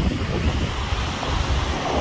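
Wind rumbling on the microphone in irregular gusts over the steady wash of small North Sea waves breaking on a sandy beach.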